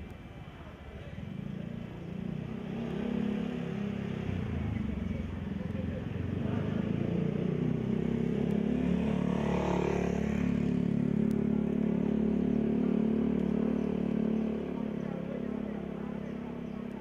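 A motorcycle engine running steadily over people talking. It becomes fuller and louder about seven seconds in and eases off shortly before the end.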